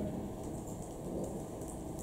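Steady background room noise, a low even hiss and rumble with no distinct events.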